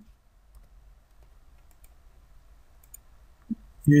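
A few faint computer mouse clicks, spaced a second or so apart, over a low background hum.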